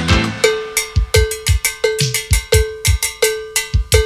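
Percussion break in a salsa track: about half a second in, the rest of the band drops out, leaving a ringing cowbell struck in a steady pattern roughly every 0.7 s over kick drum and sharp snare-like hits.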